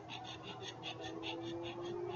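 Marker pen tip scratching quickly back and forth on journal paper while colouring in a square, about five strokes a second, over a faint steady electrical hum.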